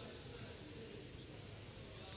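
Quiet room tone of a large hall: a faint, steady hiss and low hum with no distinct event.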